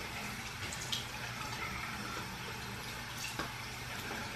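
Water running steadily from a bathroom tap into the sink while a person splashes it onto her face to wet it, with a few faint splashes.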